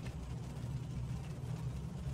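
Steady low background hum of room tone, with no other sound.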